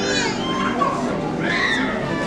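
Indistinct chatter of many children's voices at once, with a couple of higher calls standing out, one at the very start and one about three-quarters of the way through.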